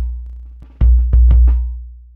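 Acoustic drum loop (kick, snare, hi-hat) layered with a deep 60 Hz sine-wave sub-bass from a Thor synthesizer, gated open by the kick drum through a low-pass-filtered sidechain. The sub swells with two kicks about a second in and rings down between them.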